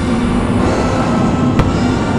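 Loud fireworks-show soundtrack music, with one sharp firework bang about one and a half seconds in.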